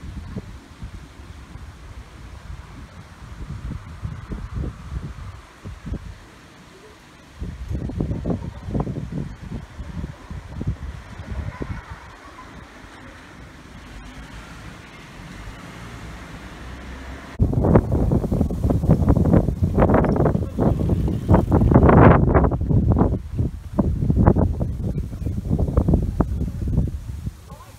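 Wind buffeting the microphone in uneven gusts, a low rumbling noise that turns much louder about seventeen seconds in.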